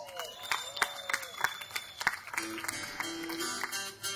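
Scattered claps and cheers from the audience, then about two and a half seconds in the string band begins to play with acoustic guitar notes.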